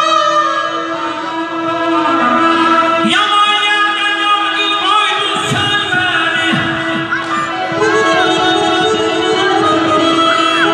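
Live amplified Azerbaijani folk music: a garmon (button accordion) plays sustained, ornamented melody lines over a held drone. A man's singing voice with gliding, ornamented phrases comes in over it in the second half.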